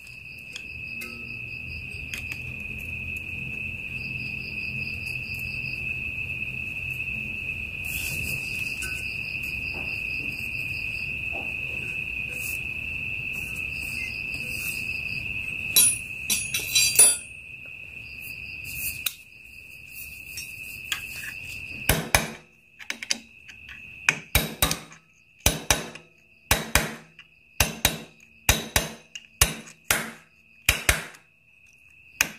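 Crickets trilling steadily in the background. From about two-thirds of the way in come a series of sharp metallic taps, roughly two a second, from a hand tool working on a motorcycle's clutch hub nut.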